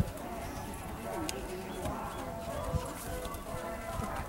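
Distant spectators' voices and music, with the hoofbeats of a horse walking on the soft dirt of an arena.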